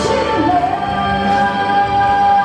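A woman singing a pop song live into a microphone over instrumental accompaniment, holding one long note through the second half.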